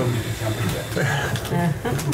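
Indistinct talking in a small room: voices that no words can be made out of.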